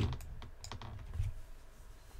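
A few faint, irregular clicks of computer keys, as on a keyboard used to step through moves.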